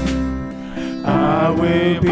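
A man singing a slow worship song over acoustic guitar, holding a long note and then moving to a new phrase about halfway through.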